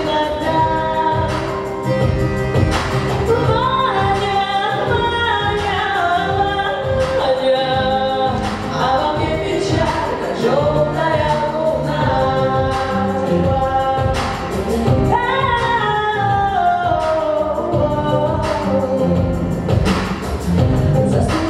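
A pop song: a woman singing the melody over a backing track with a steady beat.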